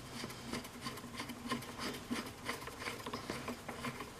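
A hand tool rasping and scraping in the wooden end of an archtop guitar body, working the endpin hole that will take an endpin jack. It makes uneven short scraping strokes, several a second.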